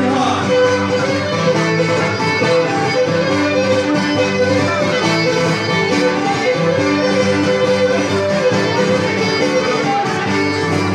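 Cretan folk dance music: a bowed string melody over plucked string accompaniment, running steadily at a lively dance pace.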